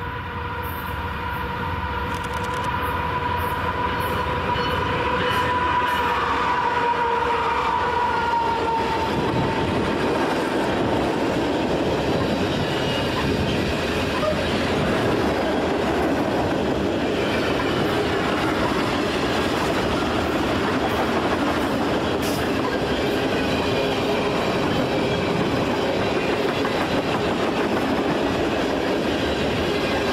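A CN freight train passing close by. As the locomotives draw near there is a steady whine for about the first nine seconds, growing louder. Then the string of freight cars rolls past with a steady rumble and wheel clatter that doesn't let up.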